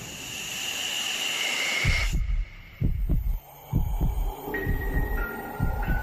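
Heartbeat sound effect in a horror intro: a hissing whoosh with a high whine for about two seconds, then deep heartbeat thumps in pairs, about one double beat a second, with faint high tones joining near the end.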